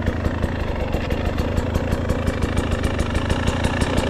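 Husqvarna TE 300 Pro two-stroke enduro motorcycle engine idling steadily, with an even pulse.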